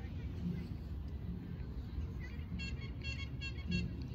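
A quick run of six or seven short, high-pitched squeals from a young child in the second half, over a steady low background rumble.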